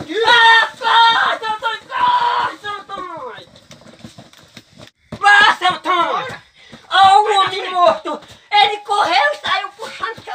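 Men's voices yelling and exclaiming without clear words, with a short lull about halfway through.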